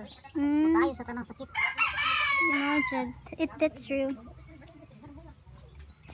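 A rooster crowing once, starting about a second and a half in. It is a hoarse call about one and a half seconds long that falls slightly in pitch, with a woman's voice just before and after.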